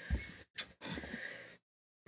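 A man's faint breathing: a short sharp intake of breath, then a longer, airy breath, with a soft low bump near the start.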